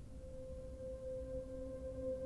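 Soft ambient background music: a single steady held note with faint higher overtones, and a lower note sounding beneath it just after it begins.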